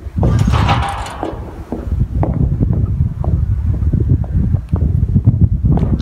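Wind buffeting the camera's microphone, heard as an uneven low rumble, with a short hiss in the first second and irregular light taps of footsteps on pavement.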